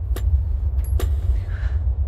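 Deep, steady low rumbling drone of horror-trailer sound design, with two sharp clicks about a second apart.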